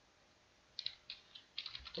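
Light clicking of a computer keyboard and mouse: about a dozen quick clicks in two bunches, starting just under a second in.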